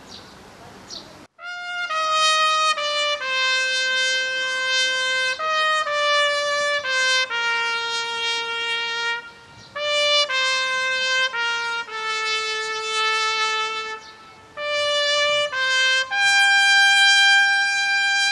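A trumpet plays the tower's daily noon call: a slow melody of held notes, with two short breaks, ending on a long, higher held note.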